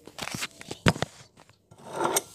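Handling noise from a phone being moved and set down on a table: rubbing across the microphone and several clicks and knocks, the sharpest about a second in, then a rising rustle near the end.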